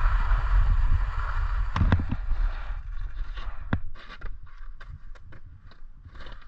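Skis sliding and scraping over packed snow on a traverse, with wind rumbling on the microphone. The rush eases off about halfway through, leaving a scatter of sharp clicks and knocks.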